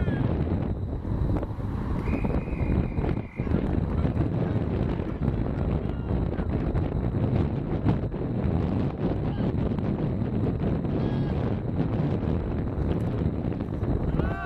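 Wind buffeting the camcorder's microphone, a continuous low rumble across the field. A short steady whistle blast, fitting a referee's whistle, sounds about two seconds in.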